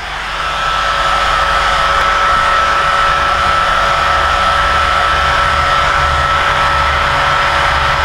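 Small handheld hair dryer running: a steady rush of blown air with a thin, steady high whine from the motor, building up over the first second and then holding level. It is drying a freshly varnished decoupage canvas.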